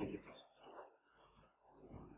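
Near silence: room tone after a short spoken "thank you" at the very start, with only faint voices in the pause.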